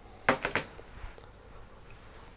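A few quick, sharp snips close together in the first half second: small fly-tying scissors trimming off waste ends.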